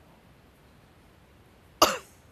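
A single short, loud human cough near the end, over faint background.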